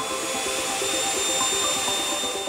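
Small ducted fan spinning at speed: a steady rushing whine with a thin high tone on top.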